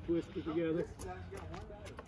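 Quiet, indistinct voices of people talking, with a few faint clicks.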